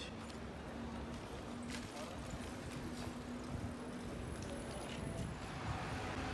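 City street ambience: footsteps clicking on the pavement, passersby talking, and a steady low hum that fades out a little after four seconds in.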